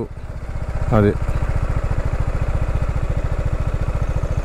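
Single-cylinder engine of a TVS Apache RR 310 motorcycle running at low revs with a steady, even beat as the bike rolls slowly.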